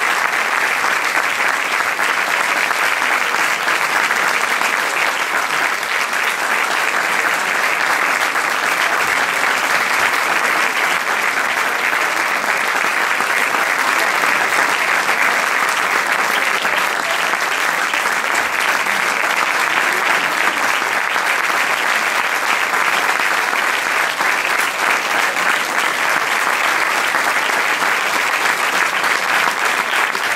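Audience applauding steadily, a dense, even clapping that holds throughout.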